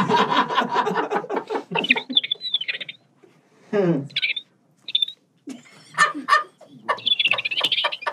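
A man's voice doing a high-pitched, chirping cartoon-bird imitation, reading out a line as bird-like tweets instead of words, in short phrases with brief pauses and a falling glide about four seconds in.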